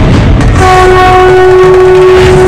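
Trailer sound design: a loud rumbling noise hit, then about half a second in a sustained horn-like tone with overtones held steady over a low rumble.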